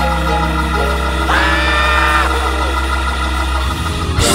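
Organ holding sustained chords over a deep bass note during a church shout break, with a voice crying out for about a second partway through. The bass note drops away just before the end.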